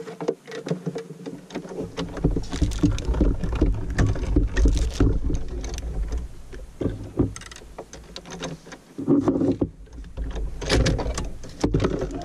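Sizzix Big Shot die-cutting machine being hand-cranked, its rollers pressing a plate sandwich with a circle die and cardstock through: a low rumble with many small clicks and creaks, and louder clunks in the last few seconds.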